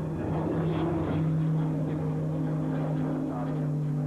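Piston-engined fighter plane's engine droning steadily, with a slight rise in pitch in the first second before it holds even.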